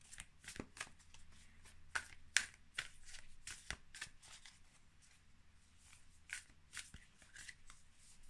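A deck of oracle cards being shuffled by hand: a faint, irregular run of soft card flicks and snaps, the sharpest a little over two seconds in.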